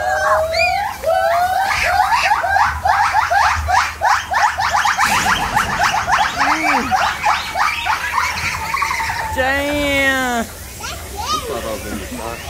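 White-cheeked gibbon calling: a long run of loud rising whoops, about four a second. Near the end come a quick ripple of arched, warbling notes.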